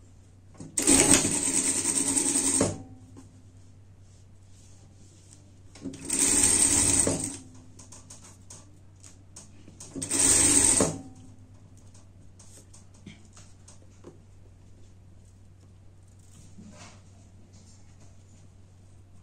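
Industrial sewing machine stitching a folded waistband onto fabric in three short runs: about two seconds, then about a second and a half, then under a second, with handling noise between runs as the fabric is repositioned.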